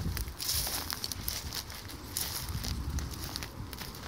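Footsteps crunching on a dry, stony dirt trail, about one step a second, with a low rumble of wind on the microphone.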